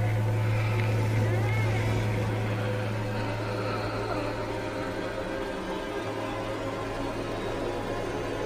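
A loud steady low hum under a dense layer of steady tones, easing slightly after about three seconds, with a brief wavering whine about a second and a half in.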